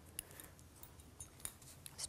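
Small scissors snipping beading thread: a few faint, sharp clicks scattered over otherwise quiet room tone.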